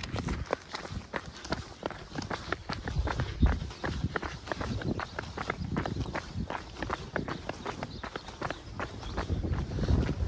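Footsteps of people running on an asphalt lane, quick regular footfalls, the camera-holder's own steps closest.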